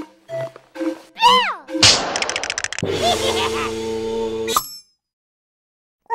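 Cartoon music with comic sound effects: a few short bouncy notes, a sliding whoop that rises and falls, a fast rattle, then a held chord that cuts off sharply, leaving silence.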